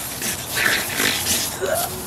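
A hard spray of water hissing as it drenches a man, with short vocal noises from him, a grunt and laughter, as the water hits his face.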